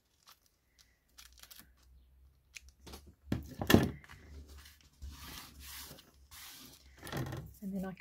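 Masking tape being trimmed with scissors and then pressed and rubbed down flat onto paper by hand, a soft papery rustle. A single sharp knock a little before the middle is the loudest sound.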